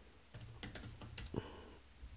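Faint typing on a computer keyboard: about half a dozen separate keystrokes in the first second and a half, as a short command is typed.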